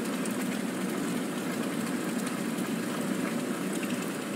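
Steady low machinery rumble from a maple syrup evaporator running in a sugarhouse while the automatic draw-off lets finished syrup out into a stainless tank.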